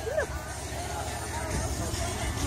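Faint voices and chatter of people some way off, over a steady low rumble.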